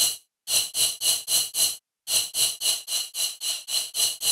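Synthesized noise layer from Serum's noise oscillator, played in short rhythmic hits on a triplet pattern, about four a second, each swelling quickly and decaying shortly. It sounds bright and hissy, softened by RC-20 lo-fi processing. The hits break off briefly twice, once near the start and once about halfway through.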